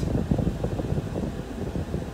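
Car interior noise while driving: a steady low rumble of road and engine noise with a fan-like hiss.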